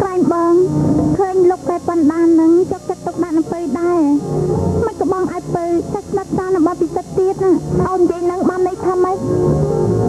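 A Khmer film song: one voice singing a melody that bends up and down in pitch, over plucked guitar and bass.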